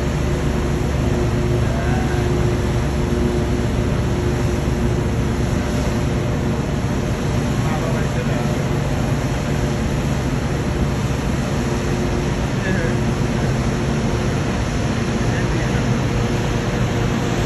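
Steady low drone of ship machinery in a harbour, a constant rumble with a faint hum running through it, mixed with wind noise and distant voices.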